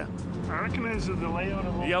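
A man speaking over a steady low hum from a vehicle's engine.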